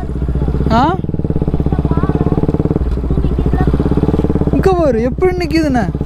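Motorcycle engine running steadily at low road speed, heard from on the bike.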